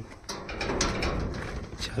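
Mechanical rattling with many small clicks, running for about a second and a half.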